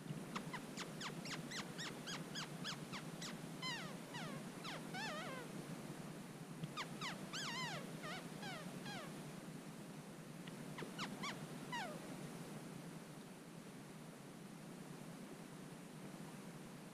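Tree squirrel alarm calls in three bouts: quick runs of short barks, about four a second, and longer drawn-out calls that fall in pitch.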